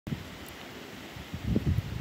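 Wind buffeting the microphone: a low rumbling noise in gusts, growing stronger about one and a half seconds in.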